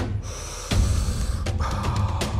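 Quick, forceful breaths in and out through the mouth in a steady rhythm, over background music with a deep low pulse.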